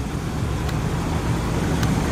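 Road traffic noise: a steady low rumble of car engines and tyres that grows slightly louder toward the end, with two faint clicks.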